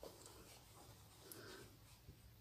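Near silence: room tone with faint handling sounds of hand sewing, a couple of very soft ticks as needle, thread and rhinestones are worked through the fabric.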